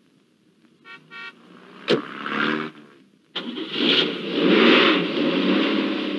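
A car door is slammed shut about two seconds in. The car's engine starts, and the car pulls away with a rising engine noise that then begins to fade.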